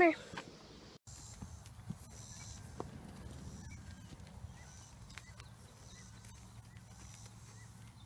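Several horses walking over a dry dirt paddock: scattered soft hoof steps and clicks over a steady low rumble.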